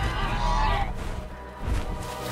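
Film sound effect of a giant Canada goose honking: one long honk in the first second that drops in pitch at its end, over a deep rumble. A short low thump comes near the end.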